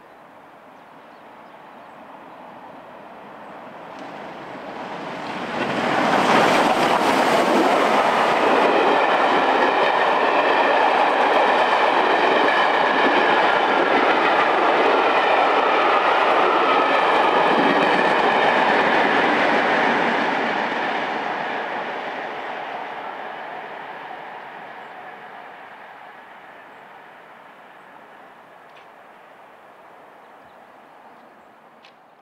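LMS Royal Scot class 4-6-0 steam locomotive 46100 passing with a train of coaches: its sound builds as it approaches, peaks suddenly as the engine goes by about six seconds in, then the coaches roll past with a steady wheel clatter for about fourteen seconds before the train fades into the distance.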